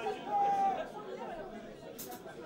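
Indistinct chatter of several voices talking in a club, with no music playing.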